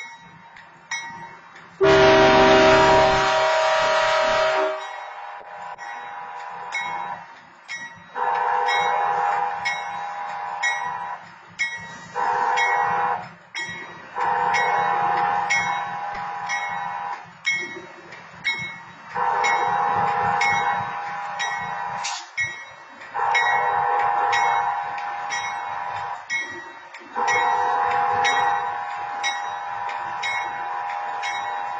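Diesel locomotive air horn of BNSF 6999 sounding a string of blasts as it pulls slowly into the grade crossing, the loudest about two seconds in, followed by several long blasts and one short one. Under it the crossing signal bell dings steadily, about twice a second.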